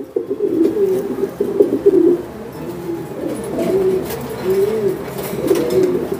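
Domestic pigeons cooing in a loft: low, wavering coos that overlap one another, almost without a break.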